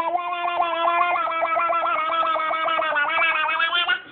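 A toddler holding one long steady vocal tone while an adult's hand pats rapidly over the mouth, chopping it into a warbling 'wa-wa-wa' several times a second.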